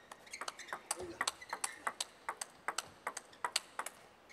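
Table tennis rally: the plastic ball is struck back and forth, giving a rapid run of sharp clicks off the rackets and the table, several a second.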